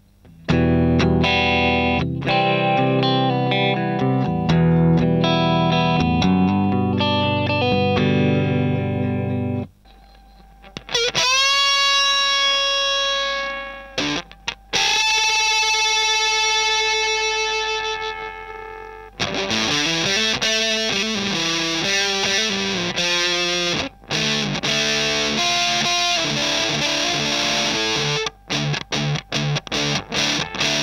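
Electric guitar played through a Madbean Bumblebee (Baldwin-Burns Buzzaround clone) fuzz pedal fitted with low-gain germanium transistors of about 50–60 hFE each, knobs at about three quarters. A low riff comes first, then two long notes bent upward that sustain and fade, then faster playing that ends in short, choppy notes.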